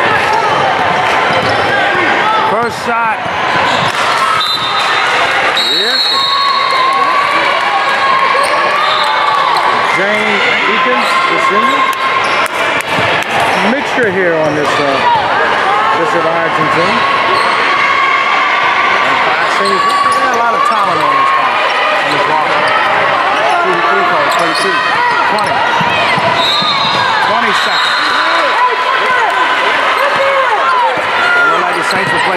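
Basketball bouncing on a hardwood gym floor during play, with a steady din of player and crowd voices throughout and scattered sharp knocks.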